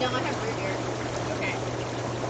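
Inflatable hot tub's air-bubble jets running: a steady hiss of churning, bubbling water over the constant low hum of the blower motor.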